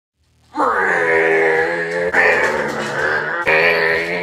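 Music of long held, many-toned notes that sets in about half a second in, with a new note or chord striking about two seconds in and again about three and a half seconds in.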